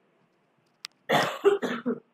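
A woman coughing, a quick run of about four coughs in the second half, after a single faint click.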